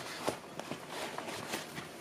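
Irregular rustling and light crinkling of a clear plastic zippered case and soft fabric as a weighted blanket is pulled out of it by hand.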